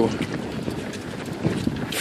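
Footsteps of a group of runners in running shoes striking a concrete road as they pass close by, a run of quick irregular steps.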